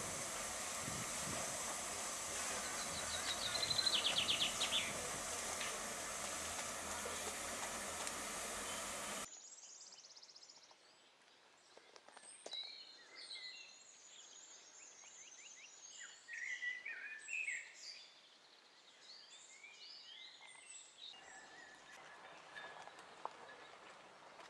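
Steady loud hiss of steam from a standing narrow-gauge steam locomotive, with birdsong over it. The hiss cuts off abruptly about nine seconds in, leaving quieter birdsong of many short chirps and whistles.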